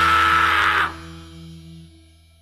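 Hardcore punk band playing at full volume, stopping abruptly a little under a second in. A few guitar and bass notes are left ringing and fading out as the song ends.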